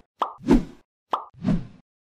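Cartoon pop sound effects: a short sharp click followed by a deeper plop, then the same pair again about a second later.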